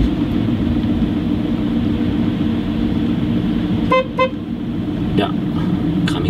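Steady low rumble of a car's engine and tyres heard from inside the cabin, with two quick, short toots of a car horn about four seconds in.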